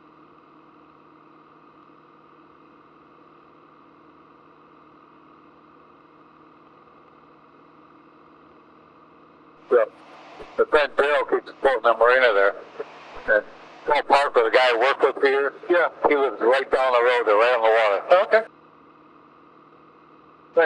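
Steady, faint hum of a small single-engine plane's piston engine, heard through the cockpit headset intercom. From about ten seconds in, loud speech covers it until shortly before the end.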